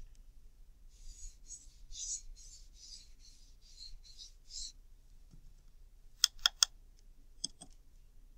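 Watercolour brush swept back and forth across paper in a quick run of short brushing swishes, then a few sharp clicks as the brush knocks against the pan watercolour set while picking up more paint.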